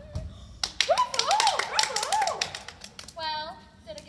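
A thump, then from about half a second in a burst of audience clapping with a wavering whoop over it, fading out after about two seconds.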